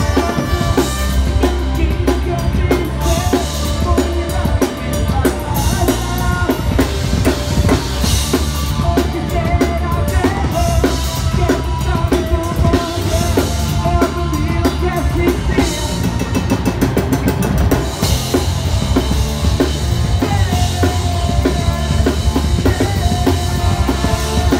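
Live ska band playing loudly on an open-air stage, with a driving drum kit and bass up front and trombone and electric guitar in the mix.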